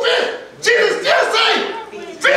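A man preaching in a loud, high-pitched, shouted voice, in short impassioned phrases, the second starting about two-thirds of a second in.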